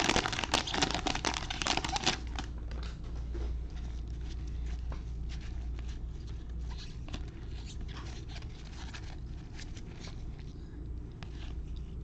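Plastic wrapper of a football trading-card pack crinkling loudly as it is torn open by gloved hands for about the first two seconds, then softer rustling and clicking of the cards being handled, over a steady low hum.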